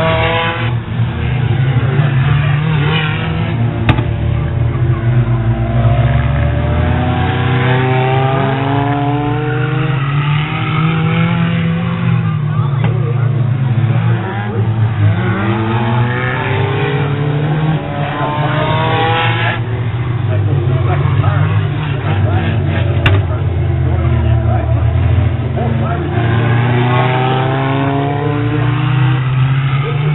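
Several race cars' engines running hard around a figure 8 track, their pitch climbing again and again as they accelerate, over a steady low drone of engines.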